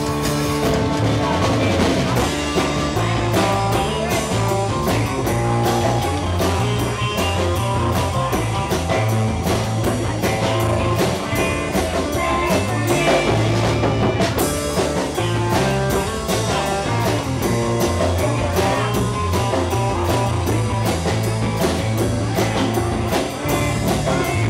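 Live surf rock band playing an instrumental: electric guitar over a walking bass line and drums.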